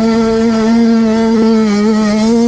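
Motocross bike engine held at high revs at a steady pitch while the bike runs flat out in one gear.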